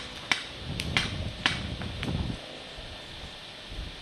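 Scattered paintball marker shots: four or five sharp pops, irregularly spaced, in the first two seconds. A low rumble on the microphone runs under them through the first half.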